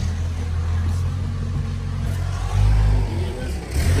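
A vehicle engine running close by, revving up about two and a half seconds in and again near the end.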